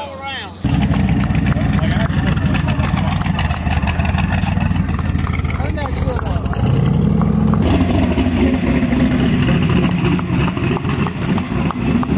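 Drag race car's engine running loudly with rapid, rough firing pulses; about six and a half seconds in the revs rise and then hold.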